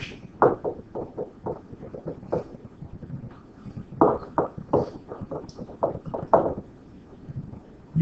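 A pen stylus clicking against a tablet writing surface as words are handwritten: irregular quick taps in two runs, the second, about four seconds in, the louder and denser.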